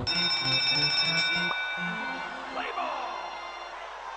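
Online video slot game's bonus-trigger sound effect: a bright bell-like ringing for about two and a half seconds over a quick run of low electronic notes, then a brief recorded voice from the game that fades out.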